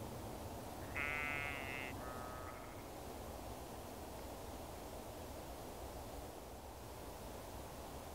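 An animal calls twice over steady outdoor background noise: a clear pitched call of nearly a second about a second in, then a shorter, fainter one straight after.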